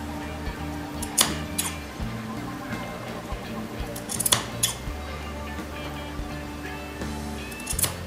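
Metal scissors snipping notches into the seam allowance of a sewn curve in light fabric: a few short, sharp snips, two about a second in, a pair around four seconds and one near the end. Steady background music plays under them.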